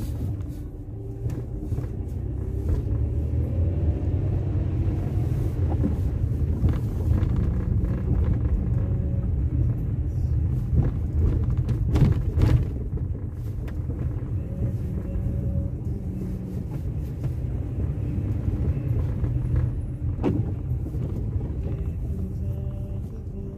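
Car cabin noise while driving on snow-covered streets: a steady low rumble of engine and tyres, with a few sharp knocks around the middle and one near the end.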